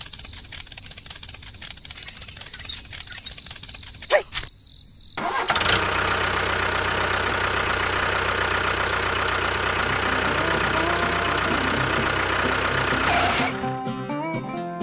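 A few scattered clicks and knocks, then a tractor engine starts about five seconds in and runs steadily for about eight seconds before cutting off.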